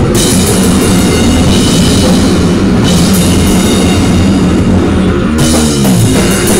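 Loud live rock band warm-up with no bass: electric guitar played over a drum kit with cymbals. Near the end the cymbals drop out and a guitar note slides down in pitch.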